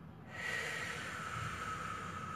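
A man drawing one long, steady breath during a controlled breathing exercise, starting about a third of a second in, with a slight whistle in the airflow.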